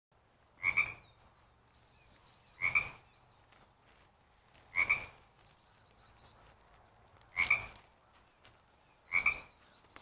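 A Pacific chorus frog calling five times, each a short two-part 'ribbit', spaced about two seconds apart over a quiet background.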